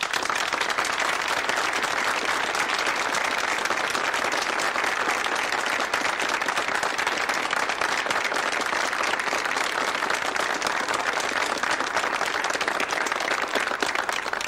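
Audience applauding in a long, steady round of clapping.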